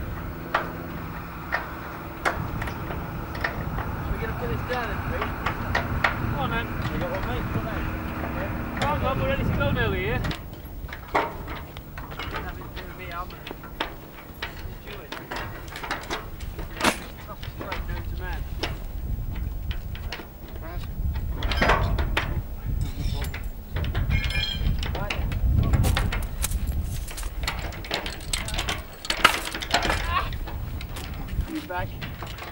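A machine runs with a steady drone for about ten seconds, its pitch wavering before it cuts out. After that come irregular metallic clanks and knocks as sections of a heavy hose with flanged couplings and valve handwheels are handled and joined, with indistinct voices.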